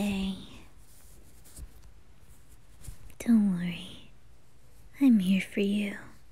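A woman's soft hummed 'mm' sounds, three times, each sliding down in pitch and then holding briefly, with a few faint mouth clicks between them.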